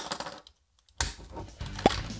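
Hard plastic parts of a Transformers Ultimate X-Spanse figure clicking as they are moved and snapped into place during its transformation. There is a sharp click at the start and another near the end, with a brief dropout to dead silence in between.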